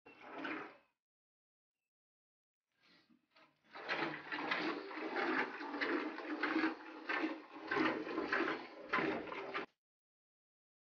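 Milk squirting into a pail during hand-milking of a cow: a rhythmic hiss of streams, about two squirts a second, after a short first burst and a pause, cut off abruptly near the end.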